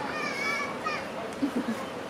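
People talking in the background, with a child's high voice during the first second.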